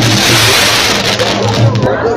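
Fireworks going off in a dense, continuous crackle of bangs, over a steady low hum.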